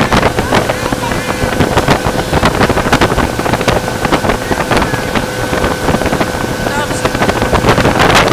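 Motorboat running at speed with a steady engine whine, under the rush of the wake and wind buffeting the microphone.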